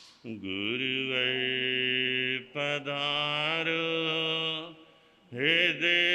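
A man singing a devotional bhajan alone, unaccompanied, into a microphone, in slow, long-drawn phrases: three held lines, each begun after a short pause for breath.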